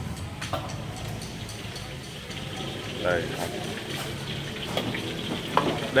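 Chả giò Triều Châu (Teochew spring rolls) deep-frying in a wok of hot oil, a steady sizzling hiss.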